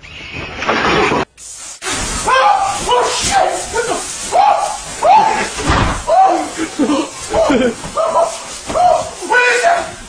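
A man screaming in fright: a rapid run of short, loud, high cries one after another, starting about two seconds in.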